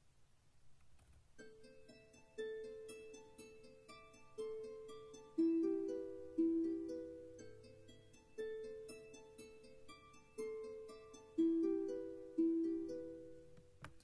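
MuseScore 4 playing back a short two-staff composition through its sampled instruments at 120 beats per minute. It begins about a second and a half in, with a repeating run of quick high notes over longer, louder lower notes, each note fading away after it sounds.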